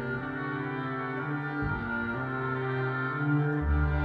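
Symphony orchestra playing a stately maestoso passage in sustained chords, with a deep low note coming in near the end.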